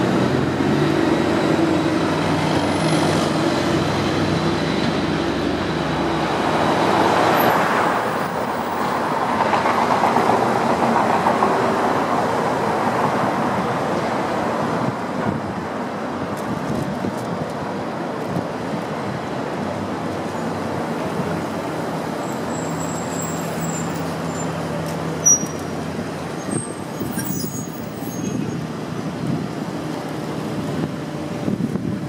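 City street traffic: cars and trucks driving past with engine hum and tyre noise, one vehicle passing louder around a quarter of the way in. A single sharp click sounds near the end.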